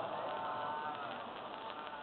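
A gathering of voices reciting a salawat together, heard as a faint, drawn-out chant that fades out about a second in.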